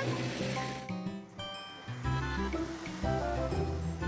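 Instrumental background music from a children's cartoon score, made of short stepped notes over a bass line. A brief rushing noise sits at the start.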